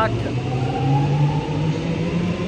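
Low hum of an electric suburban train, rising slowly and steadily in pitch as it gathers speed.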